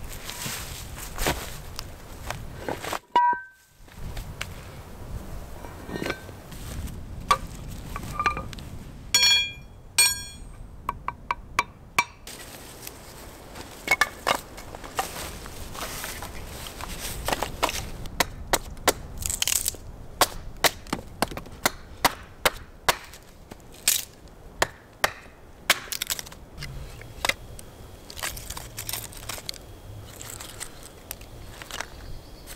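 Dry wood and birch bark being broken and handled to lay kindling: many sharp cracks and knocks, more frequent in the second half, with a few short ringing taps.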